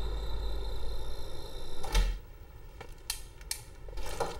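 Low steady background with a single dull thump about two seconds in, followed by a few light clicks.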